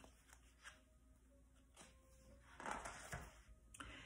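Mostly near silence, with a faint paper rustle about two and a half seconds in: a picture book's page being turned.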